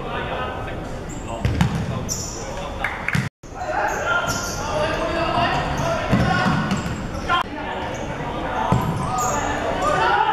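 Futsal ball being kicked and played on a wooden indoor court, with several sharp thuds echoing around a large sports hall. Players' shouts are heard over it, and the sound drops out briefly about a third of the way in.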